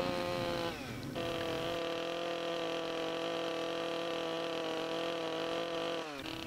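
Chainsaw running steadily as it cuts a notch into a log, its pitch shifting briefly about a second in; the sound cuts off at the end.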